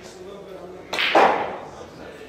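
Pool balls struck in a hard 9-ball shot: a sharp crack of the cue on the cue ball about a second in, followed at once by a louder clatter of balls colliding that dies away within half a second.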